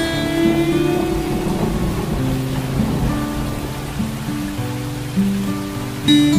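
Steady rain mixed with slow acoustic guitar music. A plucked chord rings out and fades at the start, then low held notes sound under the even hiss of the rain.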